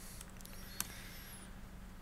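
Quiet room tone with a steady low hum and one sharp click a little under a second in: a key pressed on a laptop keyboard.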